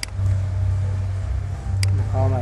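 Steady low background hum with two sharp clicks, one right at the start and one near the end, from a computer mouse being clicked.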